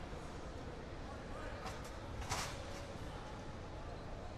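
Ambience of a large indoor arena after the game: a steady hum of distant, indistinct voices across the hall, with one brief louder noisy burst a little after two seconds in.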